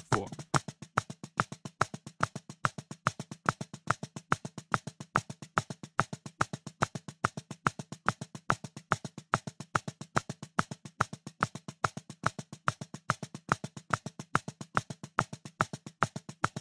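Metronome click track at 190 BPM: a sharp wood-block-like tick repeating fast and evenly, several times a second, some clicks louder than others.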